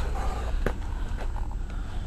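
Handling noise from a handheld camera over a steady low hum, with one sharp click about two-thirds of a second in and a fainter one a little later.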